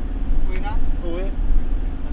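Steady low engine and road rumble inside a passenger van's cabin while it drives, with brief snatches of voices.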